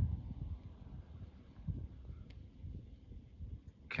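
Faint, uneven low rumble of wind buffeting the microphone, with no other clear sound.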